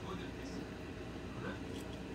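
Steady low rumbling hiss, with faint voices in the background.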